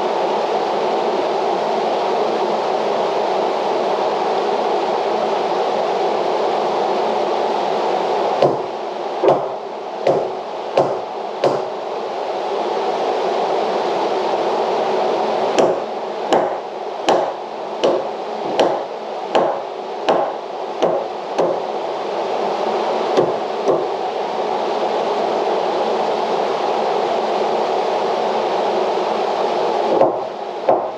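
Hammer blows on a wooden wall stud: a run of about five strikes a third of the way in, then a longer run of about a dozen at a steady one to two a second, and a last couple of taps. Under it runs the steady rush of a drum fan.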